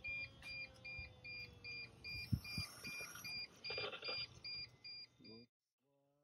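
A high electronic beep repeating evenly about two and a half times a second: the T1N Sprinter's warning chime with the key switched on. A faint falling whine sits under the first couple of seconds, and there is a single knock near the middle. The beeping cuts off suddenly near the end.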